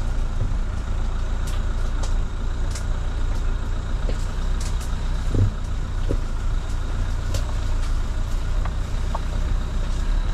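Dacia Duster engine and drivetrain running steadily at low speed on a rough green lane, a constant low rumble. Scattered light clicks and a single low thump about five and a half seconds in are heard over it.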